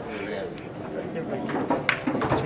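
Indistinct chatter of a pool hall, with a short, sharp click near the end like pool balls striking.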